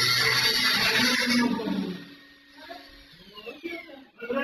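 Handheld angle grinder cutting through a metal door lock, a loud grinding rasp for about the first second and a half, then the disc winding down with a falling whine after it is switched off.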